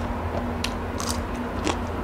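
Close-miked mukbang chewing: a mouthful of rice and raw green chili eaten by hand, with three sharp, crisp crunches in two seconds.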